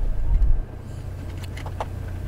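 Handling noise inside an open Mac Pro tower's aluminium case: low thumps and rumble in the first half second as a CPU heatsink is worked into place, then a few faint light clicks, over a steady low hum.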